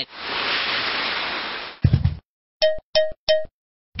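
Cartoon sound effects: a rushing whoosh of about two seconds as the superhero flies in, a short low thud, then three quick bright dings.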